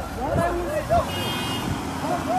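Voices of people calling out loudly in the street, with a brief high steady tone about a second in.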